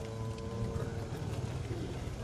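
Low, steady background rumble with a faint held hum above it; no voice.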